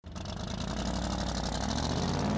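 A vehicle engine idling, a steady low sound that starts suddenly out of silence and slowly grows louder.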